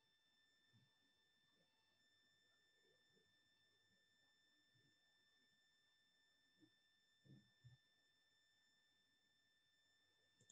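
Near silence: a faint, steady high electronic tone, with a few soft low knocks late on.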